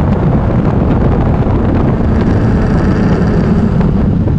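Steady wind buffeting on the bike-mounted camera's microphone, with a BMW K1200R's inline-four engine running underneath at road speed.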